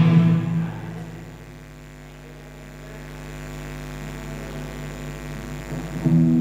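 A live rock band's playing breaks off just after the start; a held chord rings on and fades into a low sustained tone and amplifier hum that swells slightly, before the band starts playing again right at the end.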